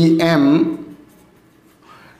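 Marker pen writing on a whiteboard: faint strokes after a spoken letter.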